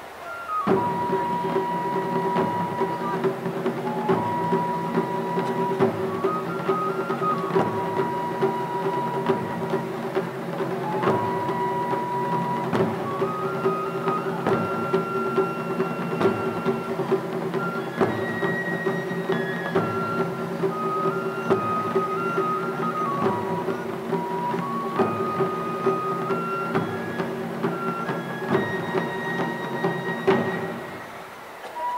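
Taiko drum ensemble playing a fast, steady rhythm on barrel and rope-tensioned drums, with a bamboo flute playing a stepping melody over it. The piece starts after a brief pause about half a second in.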